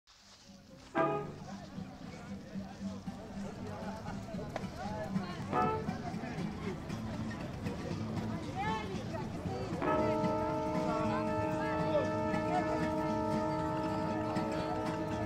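Voices with music underneath. A sudden pitched sound comes about a second in and another about halfway, and a steady drone of several held tones starts about ten seconds in and continues.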